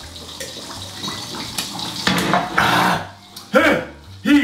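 Fish frying in hot oil with a steady sizzle. About two seconds in, a man lets out a loud, breathy exhale, and near the end a short strained groan, his reaction to a swig of strong drink.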